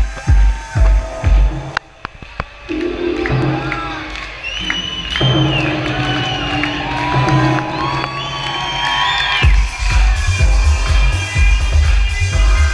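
Electronic dance music played loud over a festival sound system: a kick drum at about two beats a second stops about two seconds in for a breakdown of held synth chords, with the crowd cheering, and the beat comes back near the end.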